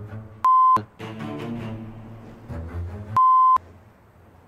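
Two electronic bleeps, each a steady single tone lasting about a third of a second, the second coming about two and a half seconds after the first. All other sound drops out under each bleep, as with a censor bleep laid over the soundtrack.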